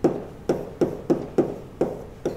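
Chalk tapping against a blackboard while writing: six sharp taps at an uneven pace, each with a short ring.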